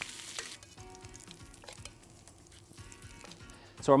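Monkfish fillets sizzling in foaming butter in a frying pan as they are basted. The sizzle drops off sharply about half a second in, leaving a faint sizzle under soft background music.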